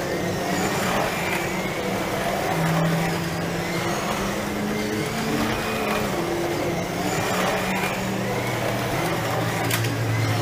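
Electric slot car motors whining as several cars lap the track, the pitch rising and falling again and again as they speed up and slow down, over a steady low hum. A single sharp click near the end.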